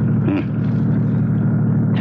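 Car engine running steadily at driving speed, a low even hum, as a radio-drama sound effect.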